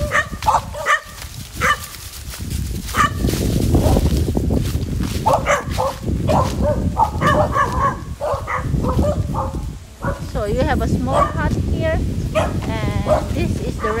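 Several dogs barking in short, repeated barks, with some longer wavering calls near the end, over a low rumble.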